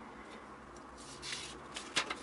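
Faint rustling and scraping of a sheet of origami paper being handled and opened out, with a short tap near the end.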